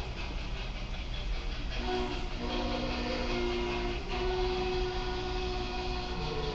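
Steam locomotive chime whistle of Cotton Belt 4-8-4 No. 819 sounding two long chord blasts over the steady rumble of the moving train. The first blast starts about two seconds in and the second follows straight after it, heard as played-back footage in a hall.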